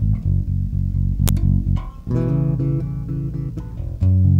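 Five-string electric bass played as a chord instrument: a repeated plucked A major voicing with the added ninth and fifth, then a new chord struck about halfway through and left ringing.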